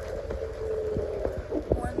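Steady hum and low rumble inside a car moving slowly, with scattered light taps.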